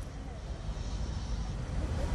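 Steady low rumble of outdoor city background noise, with faint voices in it.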